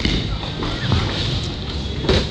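Bowling-alley din: background music and scattered voices over a steady low rumble, with no single sound standing out.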